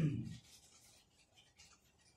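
A voice trailing off at the start, then faint rustling of a sheet of paper being handled.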